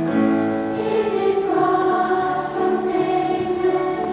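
Children's choir singing in a concert hall, holding long notes that move to new pitches every second or so.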